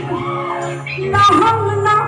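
A woman singing an Assamese song live into a microphone over amplified band accompaniment with a steady bass line. Her voice drops out briefly just before halfway and comes back in with the band.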